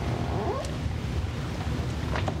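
Steady low rumble of background noise, with one short rising squeaky cry about half a second in.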